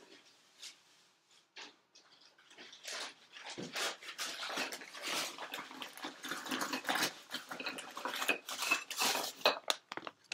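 Terracotta flower pots clattering and clinking together as they are picked up and handled. A few separate knocks come first, then a dense, irregular run of clatter about three seconds in.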